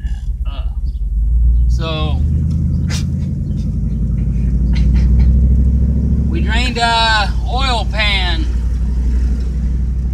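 Car engine and road rumble heard inside the cabin of a moving car, a steady low drone that swells twice, with brief voices over it near the middle.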